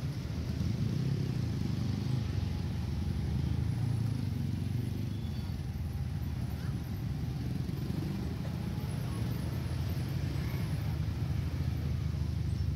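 Slow-moving road traffic of motorcycles and a coach bus, their engines running as a steady low rumble.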